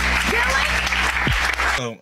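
Studio audience applauding over a low background music bed; both cut off abruptly near the end as a man's voice comes in.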